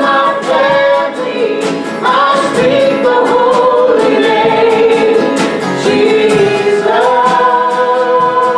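A worship team of men's and women's voices singing a slow praise song together, holding long notes, over a strummed acoustic guitar.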